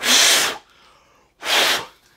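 A man blowing two loud, short puffs of breath across a vinyl record brush, about a second and a half apart.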